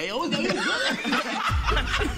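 Men chuckling and snickering over talk, with a low rumble coming in about three-quarters of the way through.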